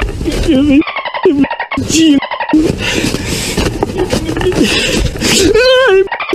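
A voice making high-pitched, warbling sounds without recognisable words, its pitch wavering up and down and rising in a wobbling glide near the end.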